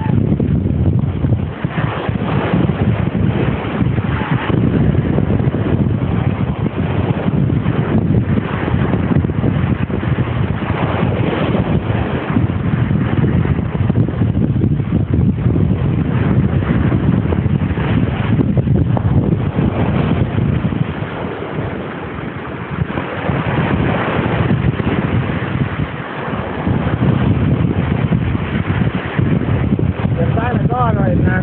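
Wind buffeting the camera microphone on a beach: a loud, continuous rumbling noise that dips slightly a few times.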